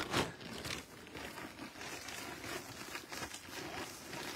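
Faint crinkling and rustling of a large plastic dog-food bag shifting on a crawling person's back, with soft scuffs.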